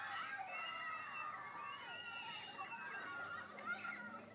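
A crowd of children cheering and screaming together in many overlapping high voices, heard through a television's speaker.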